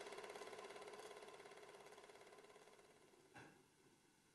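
Film projector running, a rapid even clatter with a steady hum, fading out over about three seconds; a short soft knock near the end.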